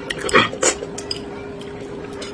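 Close-miked eating sounds: wet chewing with two louder squelchy mouth noises in the first second, and small clicks of chopsticks against a ceramic bowl, over a faint steady hum.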